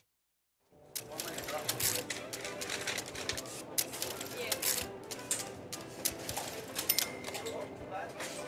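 A recorded sound-effect track for a listening exercise: a steady clatter of sharp clicks and knocks over a murmur of voices, starting under a second in, with a steady beep near the end.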